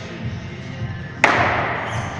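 Background music with a steady beat, and a little over a second in a single loud metallic clang of gym weights hitting the floor that rings on briefly.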